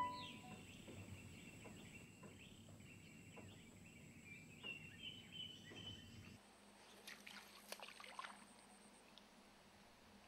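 Near silence with faint outdoor ambience: thin bird calls come and go for the first six seconds, with a few soft clicks.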